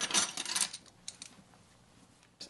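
Plastic lid of a Dijon mustard jar being twisted off, a short rasping scrape, followed by a few light clicks of a measuring spoon against the jar.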